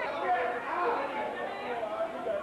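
People talking, several voices overlapping as chatter, with no words that can be made out.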